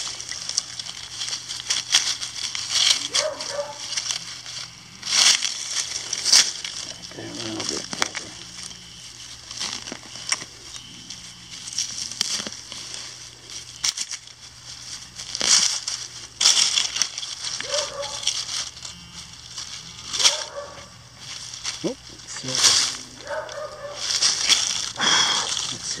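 Digging a target out of grassy soil strewn with dry oak leaves: repeated short crunching and scraping of dirt, grass roots and dry leaves, in irregular bursts.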